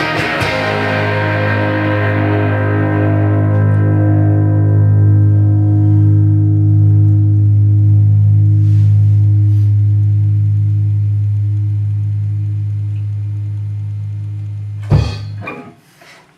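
Electric guitars and bass end a song on a final chord. After the last strikes about half a second in, the chord is let ring and slowly fades for some fifteen seconds. It is then cut off by a sudden thump as the strings are muted.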